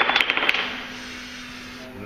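A quick run of light clicks and rattles from wooden toy blocks as an elastic band is pulled off the bottom of a tall block tower, bunched in the first half-second, then fading away.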